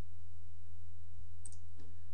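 Steady low electrical hum, with a faint computer mouse click about a second and a half in and a soft knock just after.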